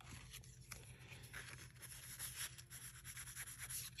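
Faint rustling and light scattered taps of paper pieces being handled and laid on a journal page, over a steady low hum.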